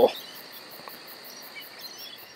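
Insects chirping in the background: a steady high-pitched ring with a rapid, even pulsing of about five a second.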